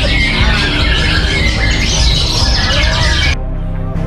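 Many caged white-rumped shamas (murai batu) singing together in a dense chorus of whistles and chatter, over background music with a steady low beat. The birdsong cuts off suddenly a little after three seconds in, leaving the music and a few fainter calls.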